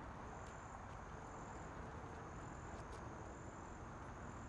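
Crickets trilling in high, repeated stretches of about a second each, over a faint steady background hiss.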